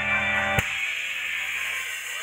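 A live band's song ending: a held electric-guitar chord rings, then a sharp final hit about half a second in cuts it off, leaving the noise of the room.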